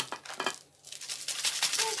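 Plastic food packet crinkling and rustling as it is handled and opened by hand, a dense run of crackles starting about a second in.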